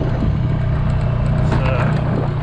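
Engine of a farm ATV being ridden, running steadily with a low, even hum.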